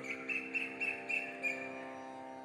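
Faint background music: a steady sustained drone, with a row of short high chirps repeating about three times a second that stop shortly before the end.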